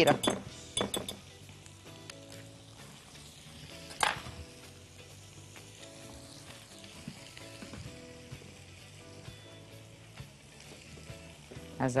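Kitchen utensil clinking and scraping against a glass mixing bowl as a flour dough is stirred. The clicks come quickly in the first second, there is one sharper knock about four seconds in, and then quieter stirring with soft background music underneath.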